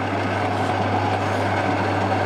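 Metal lathe running with its spindle and chuck turning at about 130 RPM and the threading tool out of the cut: a steady hum with an even mechanical whir.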